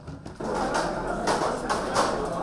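Babble of many people talking at once, coming in suddenly about half a second in, with scattered light clinks of plates and cutlery.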